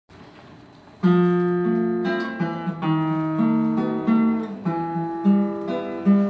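Classical guitar playing the instrumental introduction to a song. It starts about a second in with plucked chords and notes that ring on, a new note or chord roughly every half second.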